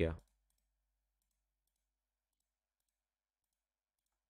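The last syllable of a spoken word, then near silence with a few very faint clicks in the first second or so.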